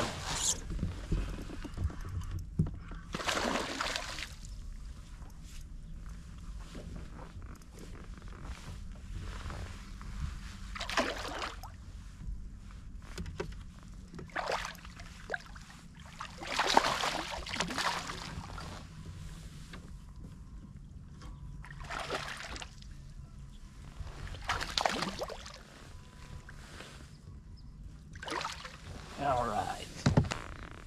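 A hooked bass being fought and reeled in from a kayak: short bursts of noise every few seconds over a low steady rumble.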